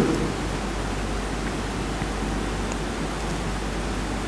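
Steady hiss of room noise with a low hum underneath, even and unchanging through the pause in speech.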